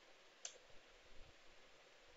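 Near silence with a faint steady hiss, broken by a single sharp computer-keyboard keystroke click about half a second in, as text is typed into a field.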